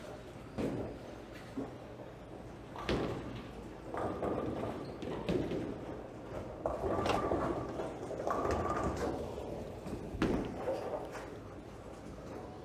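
Bowling alley ambience in a large hall: a few sharp thuds and knocks of balls and pins on the lanes, over a background murmur of distant voices.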